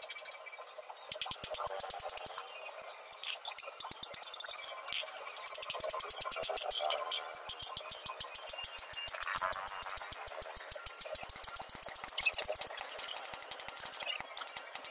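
A hand hammer striking a steel shovel blade on a small anvil in quick runs of metallic blows, several a second, with short pauses between runs, as the blade is shaped.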